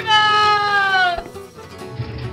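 A single long, high-pitched cry that falls slowly in pitch for just over a second and then breaks off, over background music.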